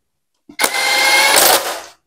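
Cordless power drill spinning a bolt on a Suzuki Satria 120 motorcycle engine casing, one burst of a little over a second with a steady motor whine, starting about half a second in and stopping near the end.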